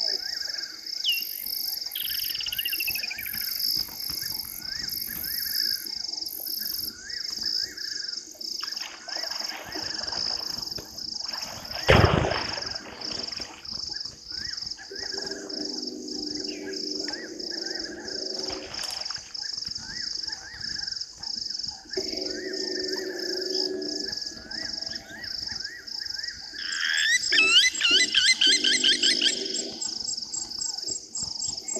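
Night chorus of frogs and insects: a steady high pulsing call about three times a second throughout, with lower croaking in patches. A single loud knock comes about twelve seconds in, and a burst of loud, rapidly repeated chirps near the end.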